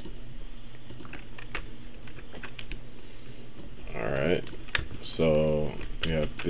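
Computer keyboard keys and mouse buttons clicking irregularly, a few scattered taps at a time. In the last two seconds a person's voice comes in over the clicks, without clear words.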